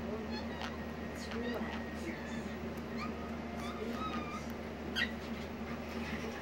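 A Java (long-tailed) macaque lip-smacking as it grooms, a run of soft, quick, wet smacks and clicks with a few short high squeaks among them. In macaques, lip-smacking is a friendly, affiliative signal given during grooming.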